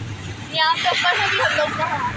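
An auto-rickshaw running along a rain-wet road: a steady low engine hum under a hiss of rain, with a voice speaking over it from about half a second in.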